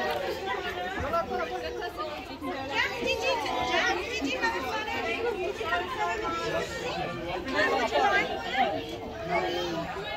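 Indistinct, overlapping chatter of young children and adults talking at once, with no clear words.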